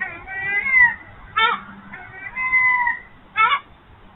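Red fox calling: two drawn-out whining calls, each followed a moment later by a short, sharp yelp.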